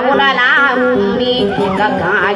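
Maranao dayunday song: a voice singing a wavering, ornamented melody with strong vibrato over acoustic guitar accompaniment.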